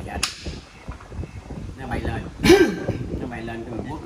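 A xiangqi piece set down on a wooden board with a sharp click about a quarter second in, followed by people's voices, loudest about halfway through.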